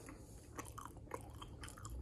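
Faint biting and chewing of a crumb-topped mini apple donut, a few soft scattered crunches.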